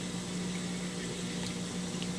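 Aquarium water circulation: a pump running with a steady hum under a constant hiss of moving water.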